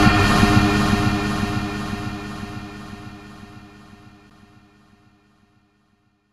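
Logo sting for an end card: a low rumble under a sustained synth chord, fading away to nothing over about five seconds.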